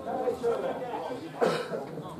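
Indistinct voices close to the microphone, with one short cough about one and a half seconds in.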